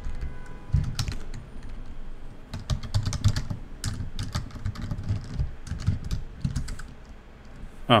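Typing on a computer keyboard: irregular runs of keystrokes with short pauses between them as a terminal command is typed and edited.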